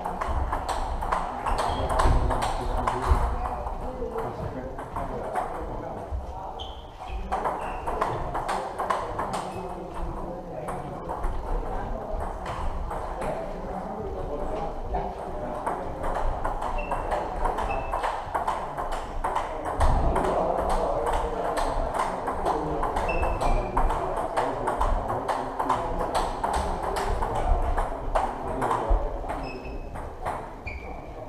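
Table tennis balls clicking off bats and tables at several tables at once, a fast, irregular ticking that never stops, with indistinct voices around the hall.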